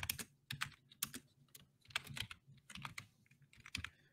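Typing on a computer keyboard: faint, irregular keystrokes in short clusters with brief pauses between them.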